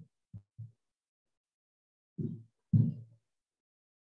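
Five short, muffled low thumps in two groups, three soft ones then two louder ones, the last the loudest, with dead silence between them.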